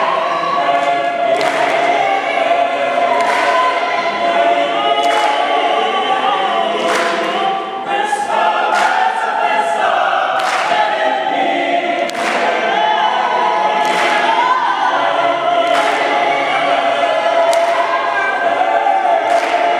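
Mixed choir singing a cappella, many voices together, with sharp hand claps every second or two and a quick run of claps partway through.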